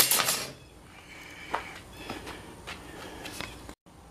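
Workbench handling noise: a short scrape at the start, then a few faint clicks and taps of tools and wood being handled. The sound cuts out abruptly just before the end.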